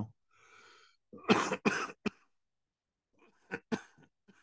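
A man coughing: two harsh coughs about a second in, followed near the end by a few shorter, quieter throat sounds.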